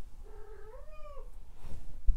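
A cat giving one drawn-out meow about a second long, its pitch dipping, rising and then falling away.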